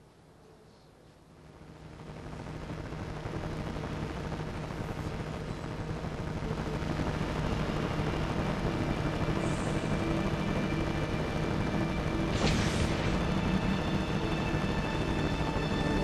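Soundtrack of an animated film clip playing over loudspeakers: a low rumbling swell rises about two seconds in and settles into a sustained, ominous musical drone, with held tones building higher and a brief hiss about twelve seconds in.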